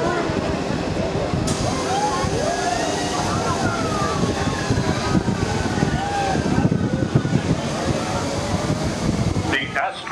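Wind rushing and buffeting over the microphone on a spinning amusement-park rocket ride, a dense steady rumble, with voices faintly heard through it.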